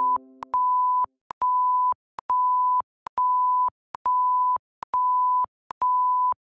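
Censor bleep sound effect: a row of identical steady high beeps, each about half a second long, coming about once a second with a small click between them. A lower multi-note chime dies away in the first second.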